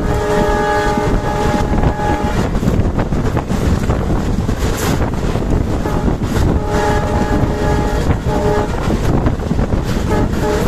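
WDM3 diesel locomotive's horn sounding two long blasts of about two seconds each, the second broken by a short gap near its end. A steady loud rumble of the moving train runs underneath.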